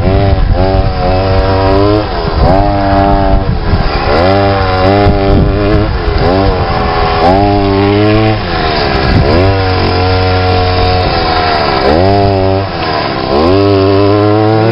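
Small gasoline engine of a large home-made RC car revving up and falling back over and over as the throttle is worked, its pitch sweeping up and down about once a second while the car slides across dirt.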